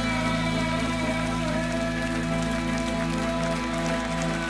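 Live rock band's final chord held and ringing out, steady sustained tones with no new notes, while the audience starts clapping.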